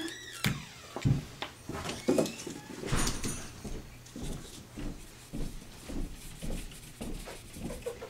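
A dry brush working mica powder across cardstock, in irregular soft strokes and rustles with a few light knocks.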